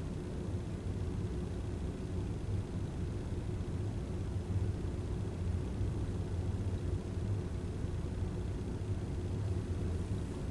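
Steady low background rumble of a room, with no speech.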